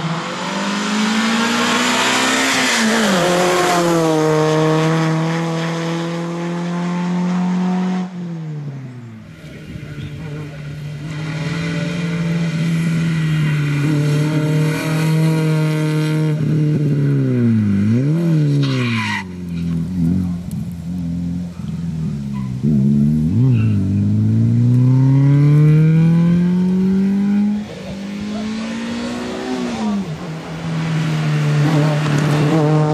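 Renault Clio rally car engine revving hard on a tarmac special stage, its pitch climbing under acceleration and dropping sharply at gear changes and lift-offs, several times over.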